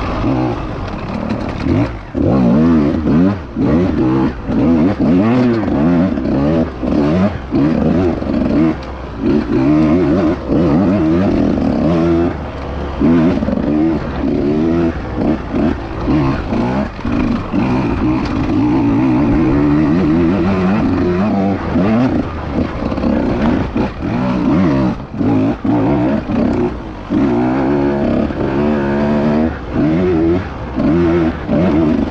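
Husqvarna TE150 two-stroke enduro bike engine revving up and down continuously under riding, the pitch rising and falling with every throttle change and the sound dropping briefly each time the throttle is shut.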